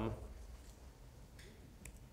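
Quiet room tone with two faint, sharp clicks, one about a second and a half in and one just before the end: laptop keys pressed to advance the presentation slides.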